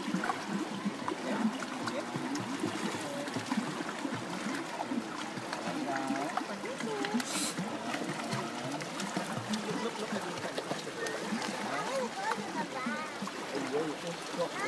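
Many voices chattering at once, with high children's voices calling out near the end, over water splashing from a child kicking on a kickboard.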